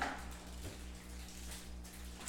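Quiet room tone under a low, steady electrical hum, with a faint brush of noise at the very start.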